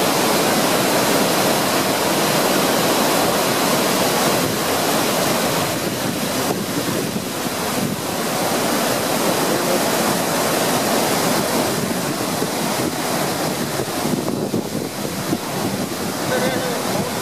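A large waterfall of muddy floodwater rushing over a broad rock ledge: a loud, steady, unbroken rush of water, with some wind buffeting the microphone.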